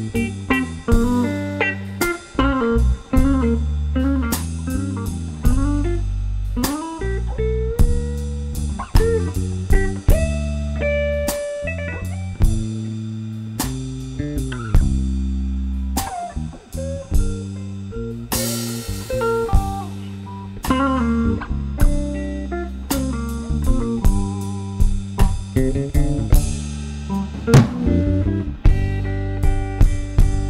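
Live blues band playing an instrumental passage. A semi-hollow electric guitar plays lead lines with notes bending in pitch, over bass guitar and a drum kit.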